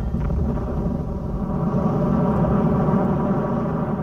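A low, dense rumbling noise takes over as the music cuts out. It swells slightly and begins to fade near the end.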